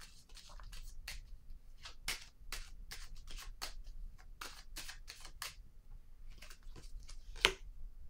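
Tarot cards being handled and shuffled: a run of light, irregular clicks and rustles, with one sharper snap near the end.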